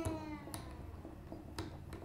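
A steel string on an unplugged Fender Jaguar electric guitar ringing and sliding down in pitch as its tuner is unwound to slacken it, fading out within the first half second. A few faint clicks follow from the tuners and strings.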